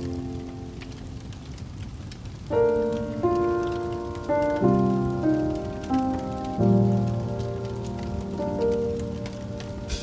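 Wood fire crackling in a fireplace with frequent small pops. About two and a half seconds in, soft instrumental music with gently struck, decaying notes comes in over it.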